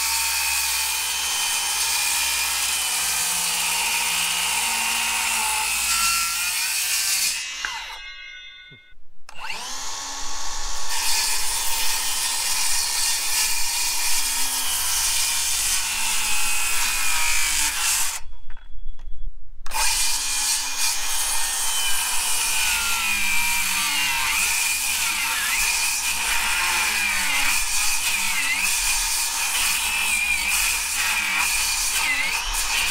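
Milwaukee circular saw cutting through a weathered locust fence post, the blade whining steadily under load. The saw winds down about eight seconds in and starts cutting again, and the sound drops out completely for a moment just before halfway.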